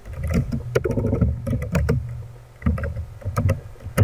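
Typing on a computer keyboard: a quick, irregular run of about a dozen key clicks, each with a dull low thump.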